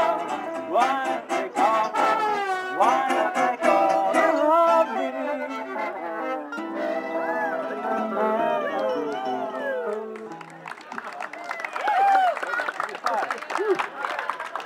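A string band with fiddle and guitar, joined by two trombones, plays the last bars of a swing jazz tune and holds a final chord that stops about ten seconds in. The crowd then cheers and claps.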